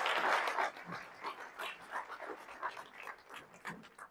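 Audience applauding, loudest at the start and thinning out to scattered claps toward the end.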